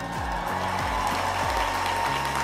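Large stadium crowd applauding and cheering, with one long sustained whoop or whistle held at a steady pitch.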